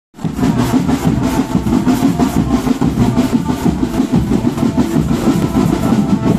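An Indonesian marching drum band plays a tune with dense, rapid drumming. It cuts in at once at the start and stays loud and steady.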